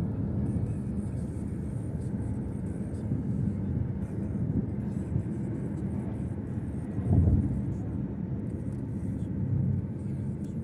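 Steady low rumble of a twin-engine jet airliner climbing overhead, heard from the ground, with a brief louder swell about seven seconds in.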